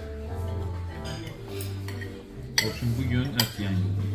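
Background music with steady held notes, over which a metal fork and knife clink against a ceramic plate twice, sharply, in the second half.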